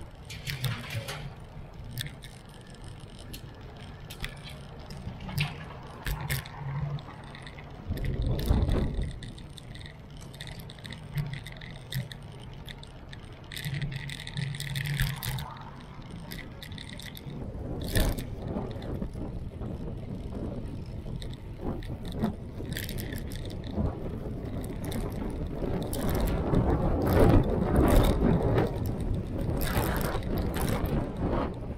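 Street sound of riding a bicycle through city traffic: wind buffeting the microphone in gusts, over short rattles and clicks from the bike. The wind rumble is strongest near the end.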